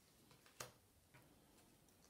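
Near silence: room tone with two faint clicks, about half a second and a second in, from flashcards being handled and swapped.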